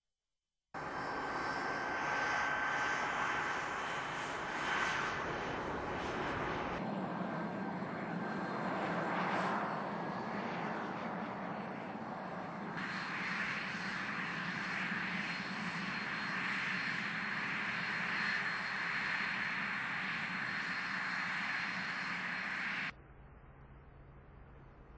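T-38 Talon jet trainer's turbojet engines running on the ground, a steady loud rush with a high whine. The tone changes abruptly about 7 and 13 seconds in, and the sound drops away to a much quieter background shortly before the end.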